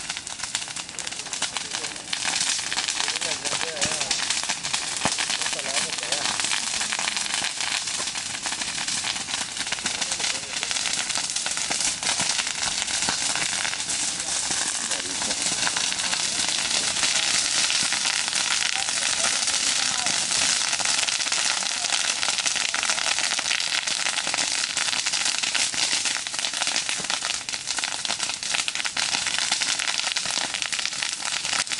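Wildfire burning through brush and undergrowth, crackling and popping in a dense, continuous run of small cracks, a little louder from about two seconds in.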